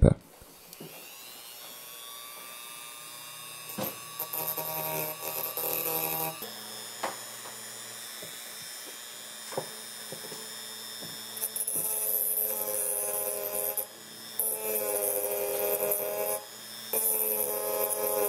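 Handheld rotary tool with a sanding drum spinning up near the start, then running with a steady whine. In several stretches it grows louder and fuller as the drum sands leftover nickel strip off the ends of 18650 lithium-ion cells.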